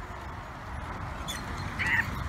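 Pedal go-kart wheels rolling over a gravel path, a steady rough rumble, with a brief high call near the end.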